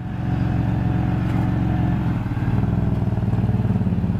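2003 Ford Windstar's 3.8-litre V6 engine running steadily at low revs, its note shifting slightly about halfway through.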